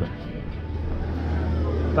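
Passenger ferry under way at sea: a steady low engine hum under a rushing wash of noise.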